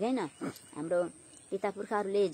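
A woman speaking in Nepali, reading or preaching in short phrases with brief pauses, over a steady faint high-pitched whine in the background.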